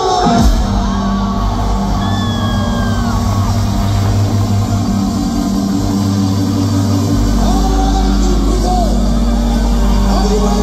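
Live rock band coming in loud with sustained chords at the start of a song, a deep bass note joining about seven seconds in, with whoops from the crowd.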